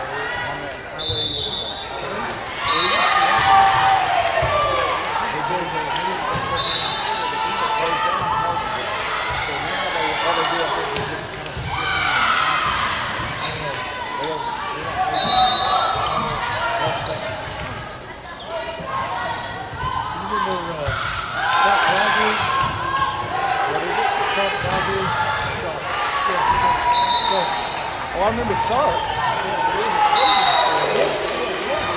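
Indoor volleyball match: players and spectators shouting and cheering, the ball thudding off hands and arms, and several short high referee's whistle blasts spread across the stretch, all echoing in a large gym.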